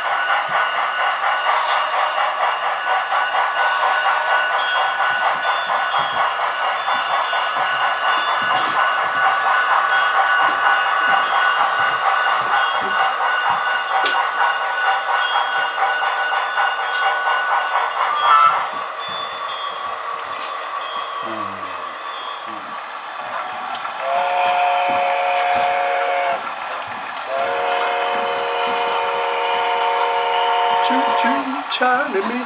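Sound-equipped HO scale model locomotives running, a steady sound with a fast rhythmic pulse that drops away about two-thirds through. Near the end, two long signal blasts, each a held chord of a couple of seconds, from a model locomotive's horn or whistle sound.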